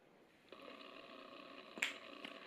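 Faint steady hum of room tone that comes in about half a second in, with a single sharp click near the end.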